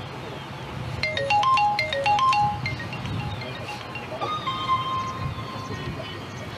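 A mobile phone ringing with a marimba-style ringtone: a quick run of bright mallet notes played twice, then a single held note.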